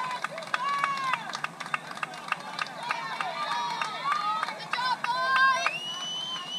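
Several high-pitched young voices shouting and calling out from the ballpark, overlapping, with scattered sharp claps; a long held call begins near the end.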